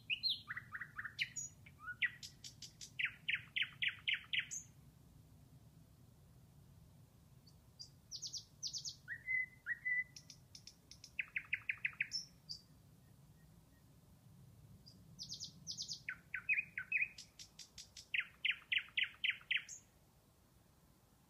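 A songbird singing: three bouts of quick trills and chirps, each about four to five seconds long, with short pauses between.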